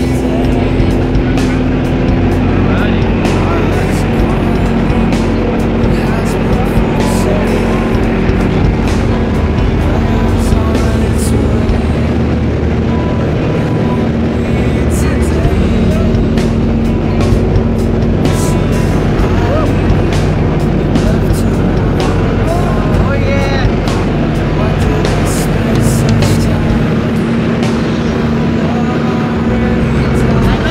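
Loud, steady drone of a light aircraft's engine and rushing air inside the cabin, with music mixed over it.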